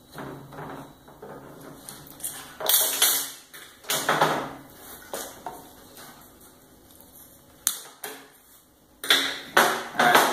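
Hand tool and metal parts clinking and scraping against a Holset turbocharger as its electronic VGT actuator is unbolted and removed. There are two louder scraping clatters a few seconds in and a few sharp clicks near the end.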